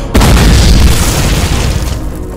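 A loud explosion-like boom sound effect in a hip-hop track's DJ tag, hitting suddenly just after the start with deep low end and dying away in a long rushing tail.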